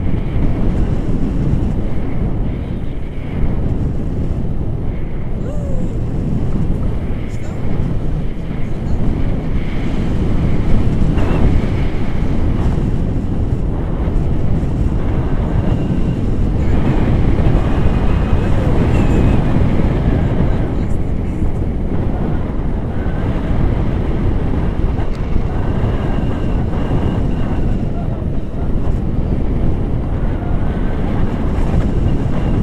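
Wind from the paraglider's airspeed buffeting the action-camera microphone: a loud, steady low rumble that swells a little now and then.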